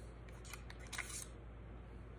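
A dive knife unlocked by its push-button and drawn from its snap-in sheath: a brief click and scrape about a second in.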